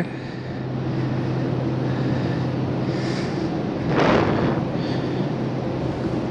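Steady low mechanical hum of running machinery or electrical equipment, with a brief rushing swell about four seconds in.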